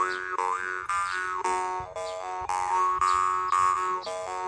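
Copper jaw harp plucked in a steady rhythm: a buzzing drone with a bright overtone melody that glides up and down above it.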